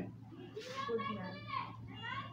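Faint voices of schoolchildren talking in a classroom, with a steady low hum underneath.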